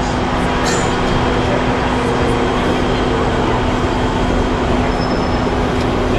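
A city bus running close by: a steady low hum over continuous street traffic noise.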